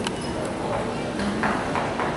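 Hoofsteps of a team of steers walking on the arena's dirt floor, with a single sharp knock right at the start.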